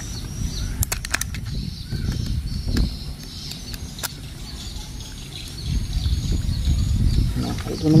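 Small hard-plastic clicks and taps as a toy train's battery motor unit is handled, fitted into its plastic body and worked on with a small screwdriver: a quick run of several clicks about a second in and another single click near the middle, over a low steady rumble.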